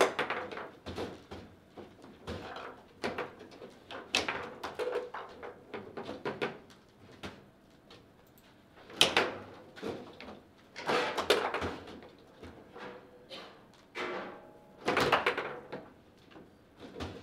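A foosball table in play: irregular sharp clacks and knocks of the ball striking the plastic players and table walls and of the rods being jerked and spun. The hits come in quick clusters, loudest about nine, eleven and fifteen seconds in.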